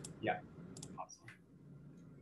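A brief spoken 'yeah', then a few faint clicks at a computer, likely keys or a mouse button, about a second in.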